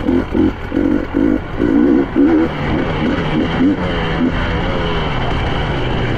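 2023 KTM 300 EXC two-stroke engine under riding load. The engine note pulses on and off in short bursts for the first couple of seconds, then runs more evenly.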